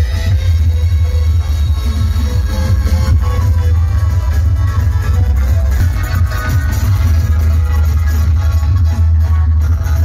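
Loud electronic dance music played over an outdoor DJ sound system, dominated by heavy bass that never lets up.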